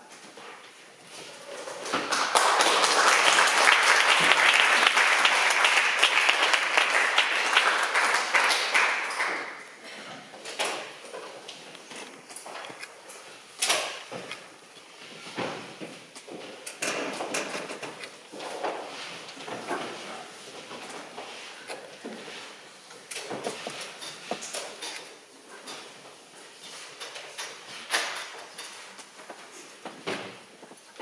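Audience applauding for about seven seconds, then scattered knocks, clicks and scrapes of wooden chairs, guitar footstools and music stands being set in place on a wooden stage floor.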